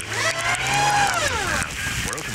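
A pitched tone with overtones that slides up and then back down over about a second and a half, part of a radio advert playing on a radio broadcast.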